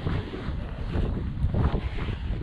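Wind buffeting the microphone of a body-worn action camera: an uneven, gusty low rumble.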